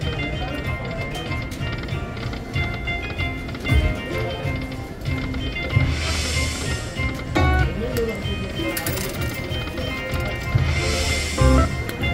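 Panda Magic video slot machine playing its reel-spin music and sound effects, with thuds as the reels stop and a hissing whoosh about six seconds in and again near the end.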